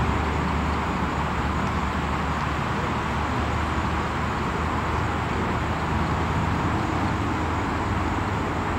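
Steady outdoor background noise: a low rumble with a hiss above it, with no distinct events.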